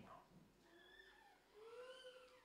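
Two faint, high-pitched vocal calls, each rising and then falling in pitch; the second, starting about halfway through, is longer.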